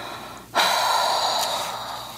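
A loud, sharp intake of breath, a gasp, starts suddenly about half a second in and fades over about a second and a half.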